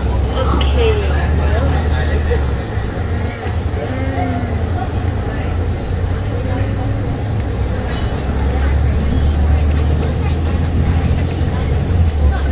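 City bus's engine and drivetrain running as the bus drives, heard from inside the cabin as a low rumble that eases for a few seconds near the middle and then comes back. Voices are heard in the background.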